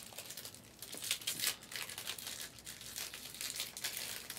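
Foil trading-card packs crinkling and rustling as they are pulled out of the hobby boxes and handled: a dense run of quick crackles, busiest from about a second in.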